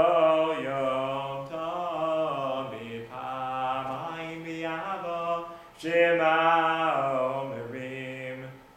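A man singing a Hebrew prayer melody solo and unaccompanied, in phrases of long held notes. A new, louder phrase begins about six seconds in.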